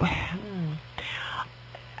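A person's quiet, breathy voice in a pause between words: a breath or whispered sound at the start, a faint short murmur, and another breath about a second in. A steady hum runs underneath.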